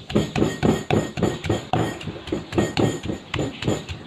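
Stone pestle pounding garlic and chilies in a heavy stone mortar, a steady run of sharp strikes at about four to five a second.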